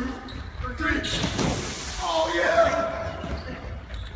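Children shouting in an echoing sports hall, with one long call about two seconds in, over running footsteps and thuds on the wooden floor and gym mats.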